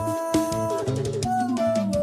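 A male singer holding long sung notes over a recorded backing track with drum kit and guitar. One held note breaks off just under a second in, and a second long note starts soon after.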